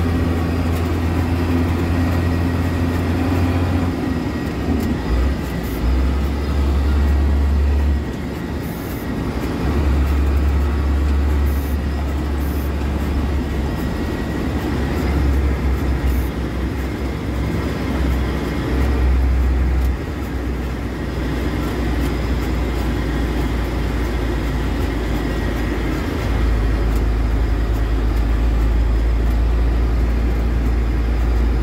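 Engine and road noise inside the cabin of a moving vehicle, a low rumble that steps up and down in level several times as the driver works the throttle.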